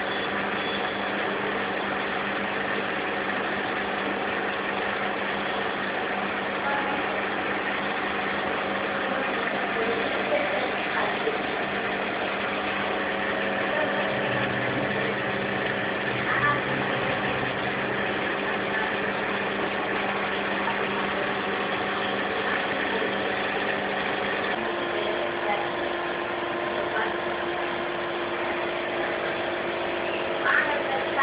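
A steady machine hum made of several steady tones over a constant hiss. The hum changes note about 25 seconds in.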